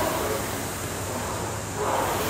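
Air-resistance rowing machine's flywheel fan whirring steadily under continuous rowing, swelling slightly near the end as a stroke is driven.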